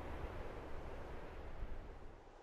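Steady wind blowing, an even rushing noise with a deep rumble of wind on the microphone.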